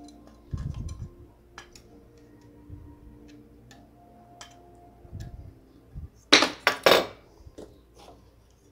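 Small brass gas-burner jets clicking against a thin metal lid as a knife tip prods them, with light handling knocks. Near the end comes a louder clatter of the lid and jets lasting under a second.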